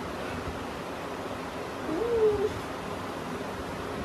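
Steady background hiss with one short hummed 'mm' from a young woman about two seconds in, rising in pitch and then held briefly.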